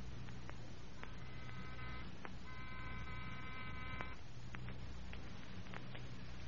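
An electric buzzer sounding twice, a short buzz and then a longer one, as a radio-drama sound effect. It sits over the steady hum and crackle of an old transcription recording.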